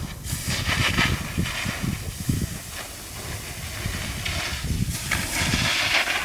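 Skis sliding and scraping across steep snow in turns, with a hiss that swells about a second in and again near the end. Wind buffets the microphone throughout.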